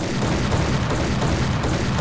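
A loud, steady, dense rumbling noise, heaviest in the low end, that cuts in suddenly: a sound effect laid under a cut in the edit.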